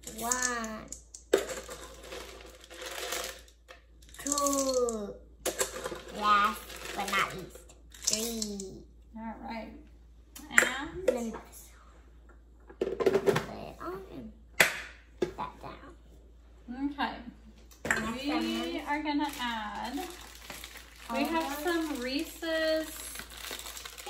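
Voices talking on and off, a child's among them, with clinks and rattles of chocolate chips being tipped from a plastic measuring cup into a stainless steel mixing bowl.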